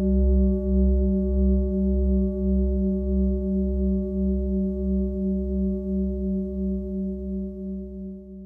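A single deep, ringing tone from a struck metal bowl-type instrument, with a low hum and several clear higher tones, fading slowly with a steady wobble of about two pulses a second.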